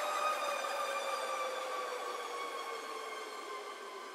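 Closing fade of a progressive psytrance track: a single sustained synth tone, rich in overtones, gliding slowly down in pitch and fading out, with no bass or beat under it.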